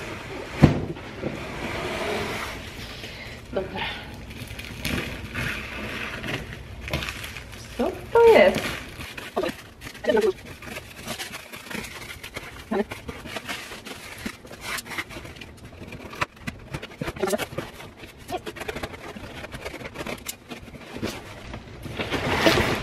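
Large scissors snipping through black plastic wrapping on a big cardboard parcel, with crinkling and tearing of the plastic and many small clicks and snips, busiest in the second half.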